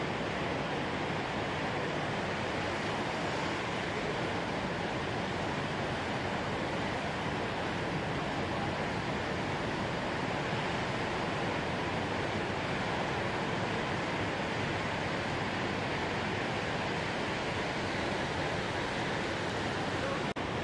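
Steady, even noise of large ocean waves breaking on a reef and washing in.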